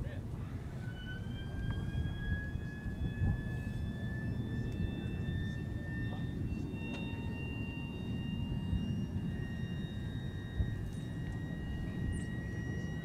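Starter whine of the B-29's radial engine, rising slowly in pitch from about a second in, over a steady low rumble.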